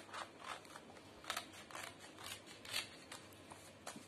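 Scissors snipping through a paper transfer sheet: a series of short, faint cuts as a piece is roughly trimmed out of the sheet.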